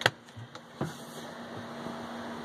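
Lid of a 12-volt portable fridge being unlatched and swung open: a sharp click at the start and a second knock just under a second in, over a faint steady hum.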